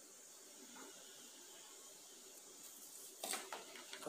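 Very faint, steady hiss of room tone, with a brief soft noise a little after three seconds.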